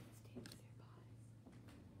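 Near silence: a faint steady low hum, with a faint brief rustle about half a second in from trading cards being slid by hand.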